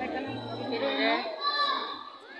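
Crowd of young schoolchildren talking and calling out together, over music with a low bass line that drops out about halfway through.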